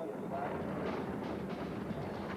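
Bobsled sliding down the ice track close past, a low, steady rumble of runners on ice.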